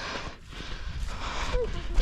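Rustling and wind noise on the microphone as the camera is carried over a grassy slope, with a low rumble throughout and a short vocal sound about one and a half seconds in.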